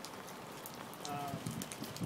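Light rain falling on open water, a fine, irregular patter of drops.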